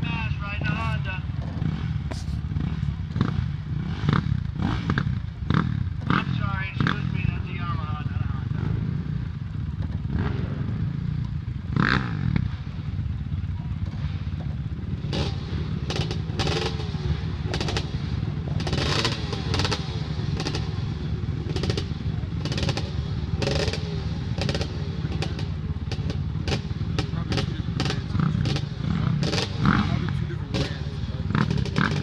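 Dirt bike engine running steadily in the background under indistinct voices, with scattered short clicks and knocks in the second half.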